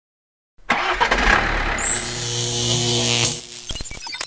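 Mechanical sound effect for an animated logo intro: an engine-like running noise that starts abruptly about half a second in, joined by a thin high whine rising slightly from about two seconds in, then dropping away into a few sharp clicks near the end.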